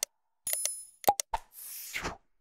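Sound effects of an animated subscribe button: a short click, a chiming ding about half a second in, a sharp pop with a quick dropping tone about a second in, then a swoosh near the end.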